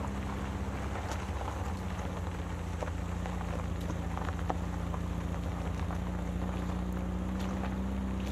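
Van driving slowly over gravel: a steady low engine drone with a slowly shifting pitch, and scattered small crackles of gravel under the tyres.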